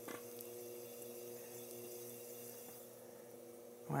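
Faint, steady hum of an electric pottery wheel's motor as the wheel spins while a ball of clay is being centered by hand.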